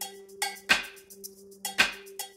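Opening of a live music number: a sustained low note held steady under sharp percussive strikes, the two loudest about a second apart.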